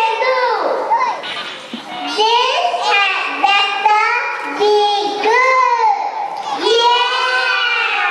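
Young children singing loudly together in high voices, in short phrases with held notes.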